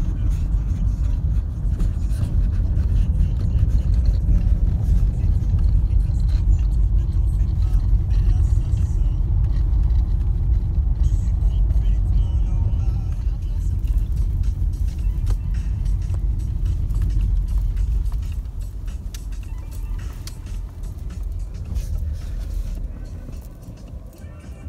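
Low rumble of a car driving, heard from inside the cabin, growing quieter in the last several seconds.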